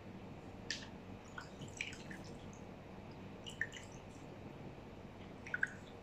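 Fingers rubbing a dried sandalwood powder face mask off the skin: faint, scattered small crackles and clicks over a low steady hum.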